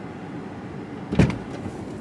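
Steady hum of a car's air conditioning in the cabin, with one short, heavy thump a little past a second in: the car's driver door shutting.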